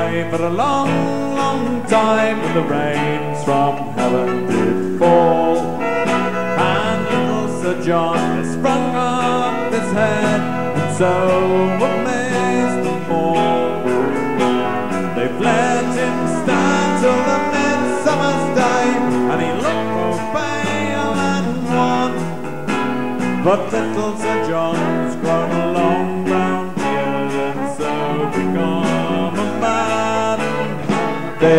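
Folk-rock band playing live: electric guitars, bass guitar and drums, with a male voice singing.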